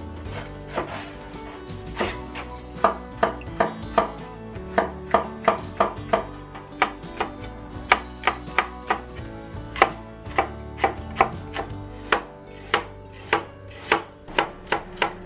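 A Chinese cleaver slicing green chili peppers on a wooden cutting board. It makes a steady run of sharp knocks, about two to three a second, starting about two seconds in, over soft background music.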